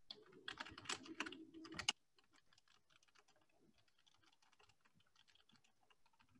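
Computer keyboard typing: a quick, irregular run of key clicks for about two seconds that cuts off suddenly, followed by only very faint scattered clicks.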